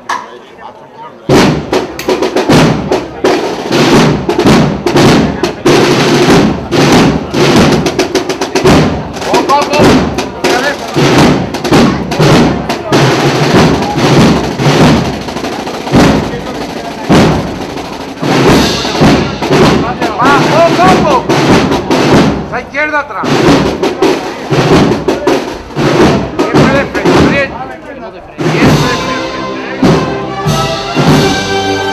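A procession band strikes up a march about a second in, with snare drums and bass drum playing loudly and steadily alongside the melody.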